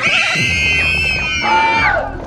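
Several people screaming at once, with high shrieks layered over one another and held for about two seconds, then cut off just before the end.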